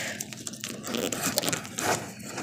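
Handling noise as a phone and a plastic doll are picked up and moved about: rustling and scraping with a run of short sharp clicks and knocks.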